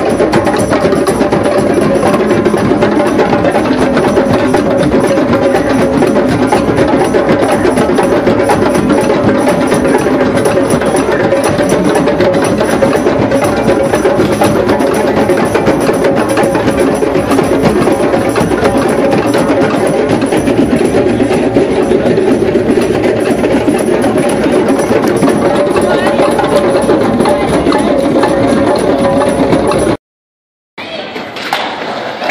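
Drum circle: many hand drums played together in a dense, steady rhythm that keeps going without a break.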